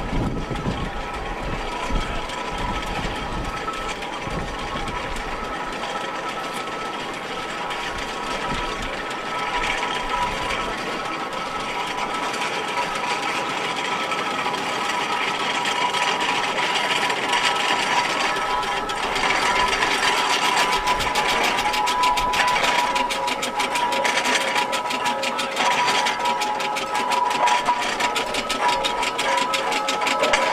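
Steam traction engines on the move: a steady, rapid mechanical clatter from the engines' motion, growing louder over the second half with a quick, dense ticking.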